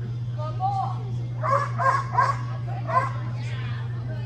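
A dog barking while it runs, with four short, sharp barks between about one and a half and three seconds in, over a steady low hum.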